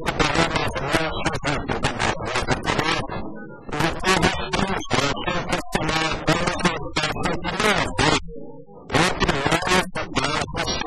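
Continuous speech in Portuguese from one speaker, with short pauses about a third of the way in and near the end.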